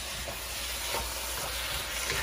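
Shrimp fried rice sizzling in a hot wok with a steady frying hiss, stirred with a wooden spoon.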